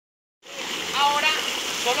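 Shallow, fast-flowing stream rushing over stones, a steady watery hiss that starts about half a second in, with a voice speaking briefly over it.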